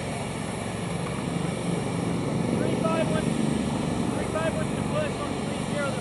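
Steady drone of a distant aircraft engine, with faint, indistinct voices over it from about halfway through.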